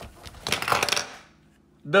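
Handling noise: about half a second of rapid clicking and rattling as a compact pistol is lifted out of its cardboard box, with the steel magazines held in the same hand.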